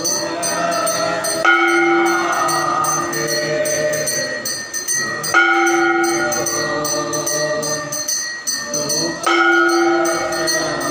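Devotional aarti hymn sung by a group, each line opening on a long held note, about every four seconds. Bells and jingling metal percussion keep a steady beat under the singing.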